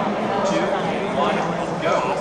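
Indistinct voices of spectators talking in a large arena, over a steady low hum.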